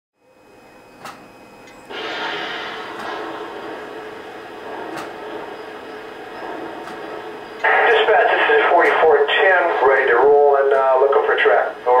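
Lionel TMCC locomotive sound system playing crew-talk: a steady radio hiss, then from about two-thirds of the way in a narrow-band two-way-radio voice, ending on "Over."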